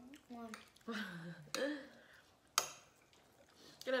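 Spoons clinking against bowls at a meal, with a sharp, loud clink about two and a half seconds in, among short murmured voice sounds.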